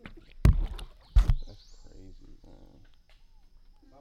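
Two loud, sudden hits about three-quarters of a second apart, near the start, from a crocodile at the water's surface right beside the boat. Each has a short splashy tail.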